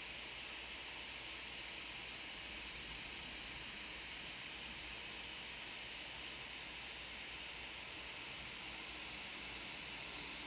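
Steady hiss with a thin, high-pitched whine held at one pitch throughout; no distinct events.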